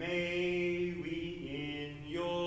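A man's solo voice chanting liturgical text on a single reciting tone, holding one pitch and stepping down at the end of the phrase.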